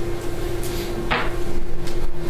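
A steady low hum with a single sharp knock about a second in and a fainter click near the end.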